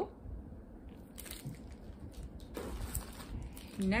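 Soft crinkling and rustling of clear plastic bags holding wax melt bars as they are handled, with a few light knocks and crackles.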